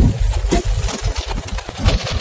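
Vehicle cab noise from inside a moving vehicle on a wet road: a steady low engine and road rumble with a few light knocks.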